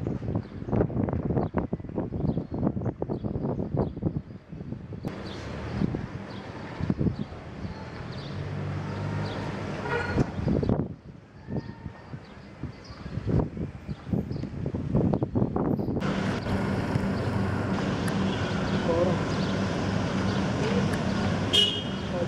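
Street noise: voices at a distance, scattered sharp knocks and clatter, and a vehicle engine. A steady low engine hum runs through the last several seconds.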